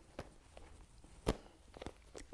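A storytime picture dice cube being tossed and caught in the hands: a few faint soft knocks and taps, the loudest about halfway through.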